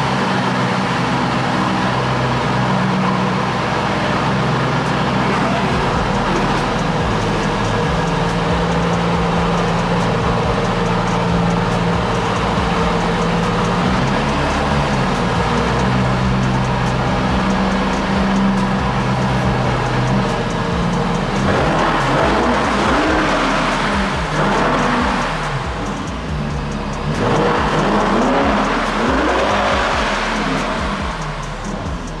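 Background music with a deep bass line, mixed with a car engine revving. The revs rise and fall repeatedly over the last several seconds.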